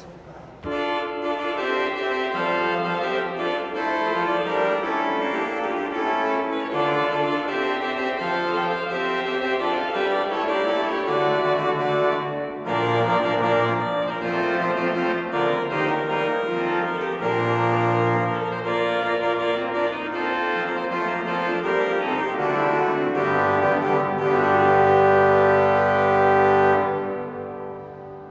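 Pipe organ (the 1969 Metzler) played loudly on its Great trumpet stop: sustained reed chords over a moving bass line, with a brief break about halfway through. It ends on a held chord that dies away in the church's reverberation near the end.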